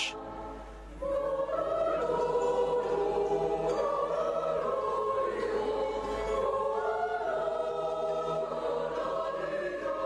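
A mixed choir of men and women singing in a church, holding long sustained chords whose pitches shift slowly. The singing comes in about a second in.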